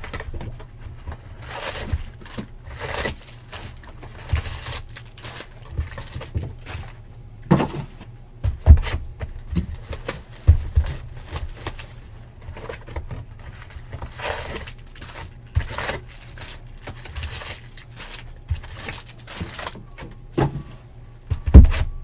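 Cardboard trading-card boxes being handled on a tabletop: irregular knocks, thumps and rustling as boxes are picked up, turned and set down, with a few sharper knocks, over a low steady hum.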